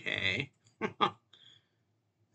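A man's short wordless vocal sound, about half a second long, followed by two quick mouth clicks about a second in and a brief breath.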